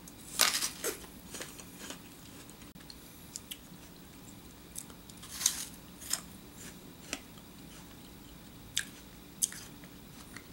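A crisp Grapple apple, an apple flavoured to taste of grape, bitten into and chewed, with scattered sharp crunches. The loudest come about half a second in and about five and a half seconds in.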